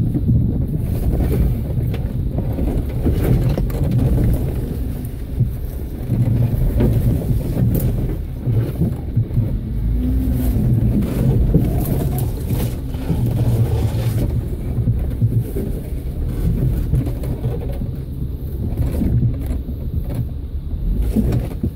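Off-road 4x4's engine running at low speed as it crawls over a rocky trail, heard from inside the vehicle as an uneven low rumble, with a few sharp knocks about halfway through.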